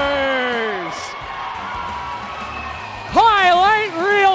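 Play-by-play hockey announcer's long, held goal call, its pitch falling as it trails off about a second in. A quieter stretch follows, then excited commentary starts again near the end.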